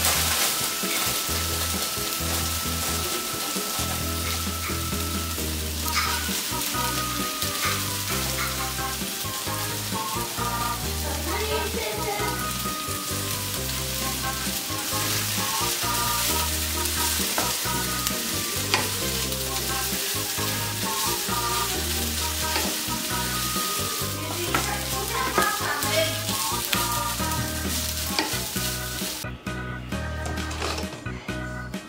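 Potato and grated-zucchini patties sizzling as they fry in a pan, a steady crackling hiss that cuts off suddenly near the end, with background music underneath.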